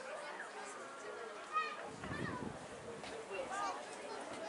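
Players and spectators shouting and talking across an open rugby field, heard from a distance. There is a short thump about one and a half seconds in, followed by a brief low rumble.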